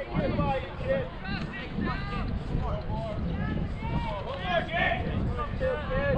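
Indistinct chatter of several people talking at once, voices overlapping with no clear words, over a steady low rumble.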